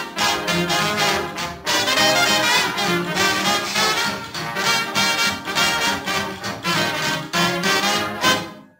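Instrumental break of a 1940s swing dance-band recording: the brass section of trumpets and trombones plays over a steady rhythmic beat, with no singing.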